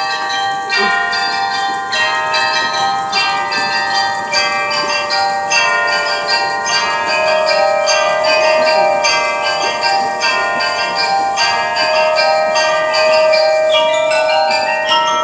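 A percussion ensemble playing bells and mallet instruments: a quick, steady stream of struck notes ringing over one another.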